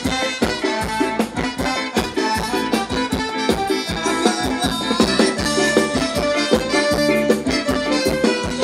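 A live band playing Thai ramwong dance music, with held melody tones over a steady drum beat.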